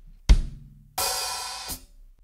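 A single kick on the 24-inch bass drum, then a 14-inch hi-hat struck open on the offbeat eighth, sizzling for most of a second before it is closed off. This is the first beat of the groove played slowly.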